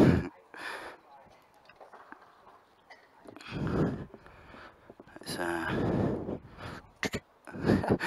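Voices in short bursts of speech or laughter, separated by quieter gaps.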